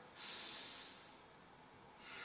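A person's long audible out-breath, a breathy hiss that fades away within about a second, followed by quiet room tone.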